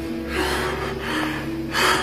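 A man breathing hard and fast, with a breath about every 0.8 s, over background music of long held low notes.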